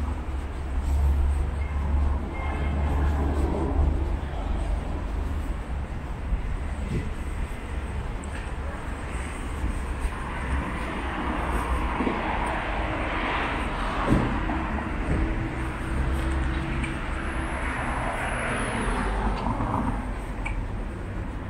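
Street traffic: vehicles passing on a road, a steady low rumble with a hiss that swells in the second half.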